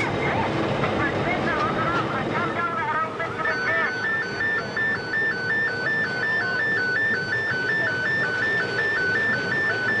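A two-tone electronic warning alarm sounds from a few seconds in, its high and low notes alternating about twice a second. It runs over a steady machinery hum in a coal mine working, with voices calling earlier on.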